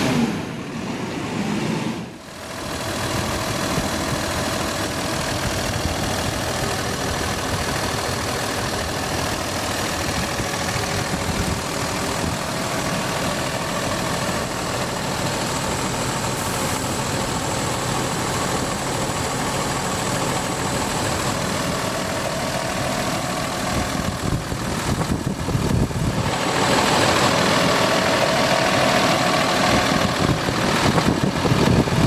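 A Cummins six-cylinder diesel bus engine idling steadily. It dips briefly about two seconds in and is louder near the end.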